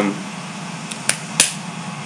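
Steady low background hum, with two short sharp clicks about a third of a second apart just past the middle.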